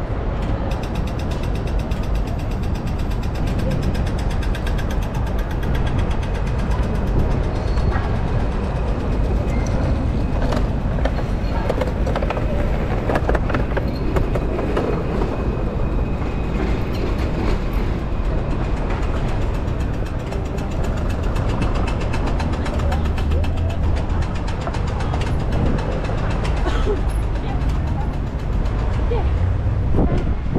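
City street ambience: steady traffic running past, with the continuous low rumble of passing cars and trams.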